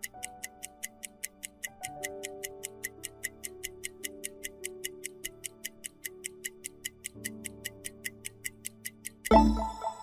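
Quiz countdown-timer sound effect: rapid clock-like ticking, about five ticks a second, over soft sustained background music. Near the end a sudden loud hit with a deep boom rings out as the countdown runs out.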